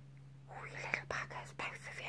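A person whispering a few soft words, starting about half a second in.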